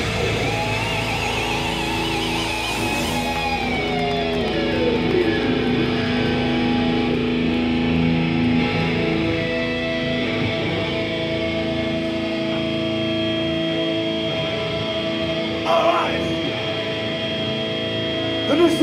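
Thrash metal band's electric guitars closing out a song live: a high guitar squeal with vibrato dives down in pitch, then held notes and feedback ring on while the bass end fades away. A short loud burst comes near the end.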